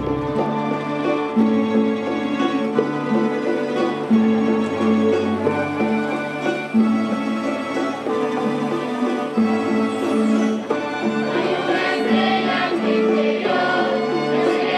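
A rondalla, a Spanish ensemble of bandurrias, lutes and guitars, playing a piece together under a conductor, the melody carried in held, tremolo-like notes over strummed chords.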